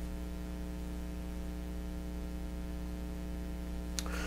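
Steady low electrical mains hum in the recording, unchanging throughout, with no other sound over it.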